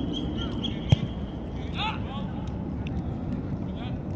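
A football kicked once with a sharp thud about a second in, over a steady low rumble. Players' voices call out briefly about two seconds in.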